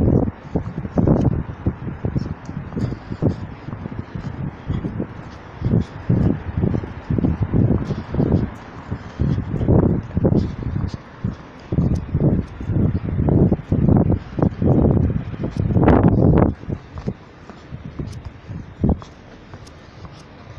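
Wind buffeting a handheld phone's microphone in irregular, rumbling gusts, each lasting a fraction of a second.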